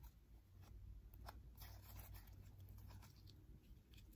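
Faint sticky clicks and crackles of slime being squeezed and kneaded between the fingers, a few scattered ones over a low steady hum.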